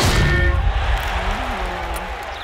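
Cartoon sound effect of a heavy crash as a big armoured robot wrestler topples and breaks apart: a sudden loud impact at the start, followed by a long low rumble, with background music.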